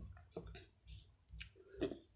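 Close-miked wet mouth clicks from chewing soft edible clay paste with the lips closed: a handful of separate short clicks, the loudest near the end.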